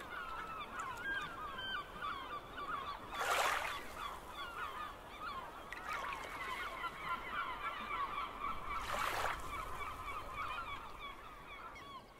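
A flock of birds calling continuously, many short calls overlapping, with two brief rushing noise bursts about three and nine seconds in.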